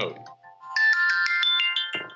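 Mobile phone ringtone playing a short melody of electronic notes that step upward in pitch.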